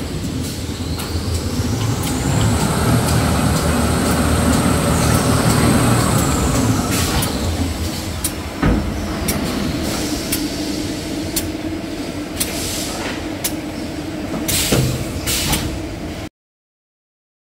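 Automatic toilet paper and kitchen towel production line running: a steady mechanical hum with a high whine that rises about a second in, holds for several seconds and falls away around seven seconds in. Scattered clicks run throughout, with a sharp knock near nine seconds in.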